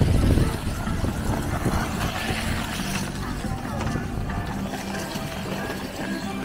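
Chatter of a crowd's voices with music playing in the background, one held tone emerging in the second half; a brief low rumble at the very start.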